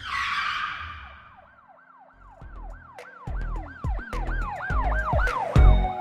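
Channel logo intro sound effect: a whoosh hit, then a siren-like tone rising and falling about four times a second over low bass thumps that build in loudness, ending on a heavy low hit.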